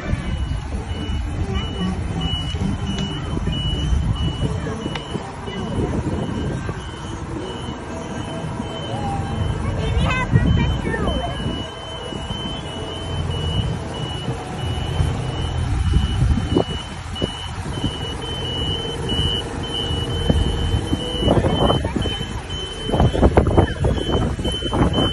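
A reversing alarm beeping: one high beep repeating at an even pace the whole way through, over a low rumble and background noise.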